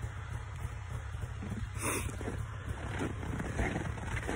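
Snowmobile idling steadily as it warms up in the cold, a low even rumble.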